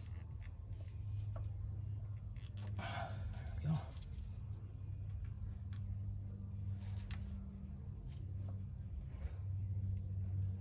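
Faint clicks and scrapes of gloved hands and a hand tool working on a valve and its hose fittings in a car's engine bay, with one small knock a little under four seconds in, over a steady low hum.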